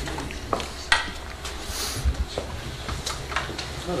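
Room noise: scattered light clicks and knocks, the sharpest about a second in, over a steady low hum.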